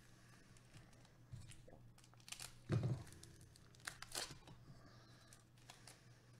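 Foil wrapper of a 1993-94 Fleer Ultra basketball card pack being torn open by hand, faint tearing and crinkling in a few short bursts, the loudest around two and a half to three seconds in and again around four seconds in.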